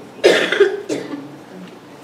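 A person coughing close to a microphone: one loud cough about a quarter second in, then a couple of smaller ones within the next second.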